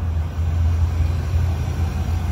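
2024 GMC Sierra 3500 HD's Duramax V8 turbodiesel idling, a steady low hum.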